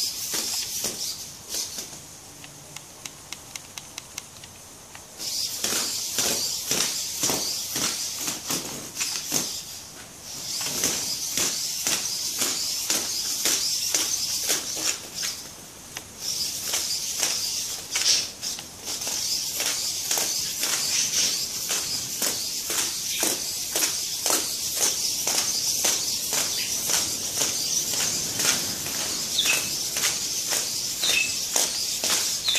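The hobby servos of a 3D-printed hexapod robot whirring with a high whine as it walks, with rapid clicking from its plastic feet tapping on concrete. The whine is absent for the first few seconds, when only the clicks are heard, and drops out briefly twice more.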